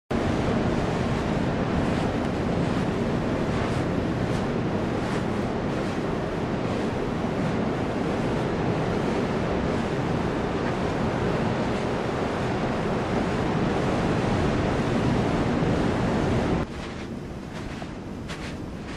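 Steady rushing noise of ocean surf and wind. It drops suddenly to a quieter level near the end.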